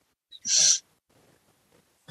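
A single short, hissy puff of breath from a man about half a second in, then silence.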